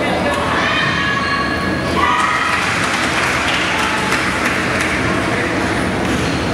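Basketball game in an echoing gymnasium: high voices calling out over a crowd murmur, with scattered thuds of a ball bouncing on the hardwood court.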